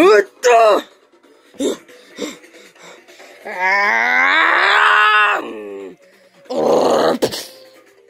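A voice making monster sound effects by mouth: two short yelps, then a long drawn-out groan that rises and then falls in pitch, and a breathy, noisy burst near the end.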